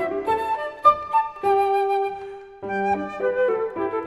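Flute with piano accompaniment playing a contemporary classical chamber piece. The flute holds one long note that fades about halfway through, then flute and piano resume with moving notes.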